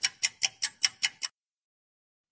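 Clock-ticking sound effect timing the pause for answering, about five sharp ticks a second, stopping a little over a second in.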